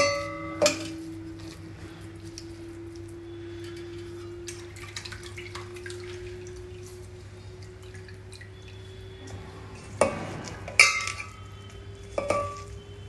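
Stainless steel kitchenware clanking: a ringing clank of the steel bowl about half a second in, faint dripping of coconut milk through a steel strainer in the middle, and two loud ringing clanks near the end as the strainer knocks against a steel plate. A faint steady tone, rising slowly in pitch, hums underneath.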